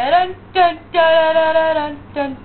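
A female voice singing a wordless sing-song tune: a short gliding note, a brief second note, then one long held note about a second in.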